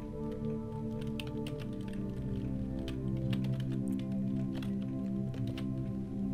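Computer keyboard typing, a scatter of light key clicks, over soft background music of sustained notes that change chord about two seconds in.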